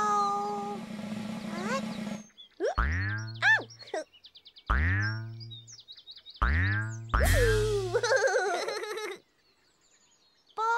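Cartoon 'boing' sound effects for a big bouncing ball rolling across grass: four springy twangs, each falling in pitch into a low hum, coming in the second half with short twittering whistles between them. A held, slightly falling tone sounds in the first two seconds.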